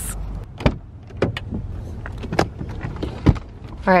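A string of sharp clicks and knocks from a car roof cargo box and car body being handled: the box's lid shut and latched and a car door opened, the loudest knock a little past three seconds in.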